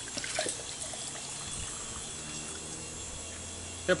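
Coconut water pouring from a freshly opened golden coconut into a drinking glass. It splashes irregularly at first, then settles into a steady trickle.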